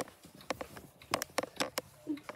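Several mechanical clocks ticking out of step with each other: sharp, irregular ticks, bunched closer together in the second half.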